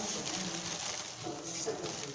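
Quiet room noise with brief, faint snatches of a voice in the background.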